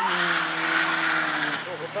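A car drifting: its tyres screech and scrub across wet asphalt while the engine is held at high revs, slowly sagging. The skid dies away about a second and a half in.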